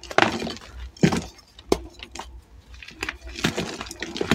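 Blocks of dyed, reformed gym chalk crushed by hand: several sharp crunches about a second apart, with softer crumbling between as the chalk breaks apart.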